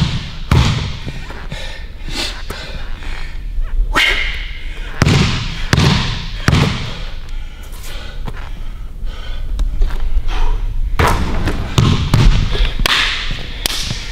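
Basketball bouncing on a hardwood gym floor in short sets of two or three dribbles, each thud echoing in the large hall.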